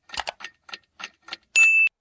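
Clock ticking sound effect, short sharp ticks falling roughly in tick-tock pairs, ending about three-quarters of the way through in a loud, high, briefly held ding.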